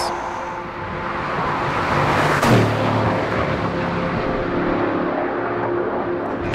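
A fast car approaching and passing close by about two and a half seconds in. Its rushing sound peaks sharply as it goes past, and its engine note drops in pitch as it pulls away.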